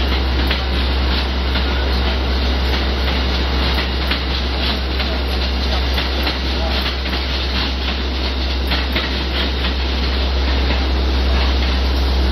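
Amtrak passenger train passing on the far tracks, a steady rolling noise with its wheels clicking over rail joints, over a constant low rumble.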